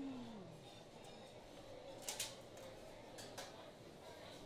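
Faint restaurant dining-room background, with sharp clinks of dishes about two seconds in and again about three and a half seconds in. A short hummed voice sound fades out at the very start.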